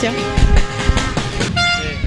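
Several car horns honking at once in street celebration of a football win, held tones overlapping, with one loud clear horn near the end.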